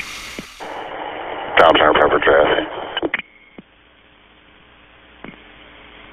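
Fire department radio traffic: a short voice transmission, about a second and a half long, thin-sounding and cut off above the voice range, then an open channel's low steady hiss with a faint hum.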